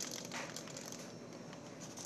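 Faint rustling and handling noise, with a few soft clicks in the first half second.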